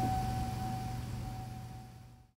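The tail of a single struck bell-like tone, one steady ring slowly fading away over a low steady hum.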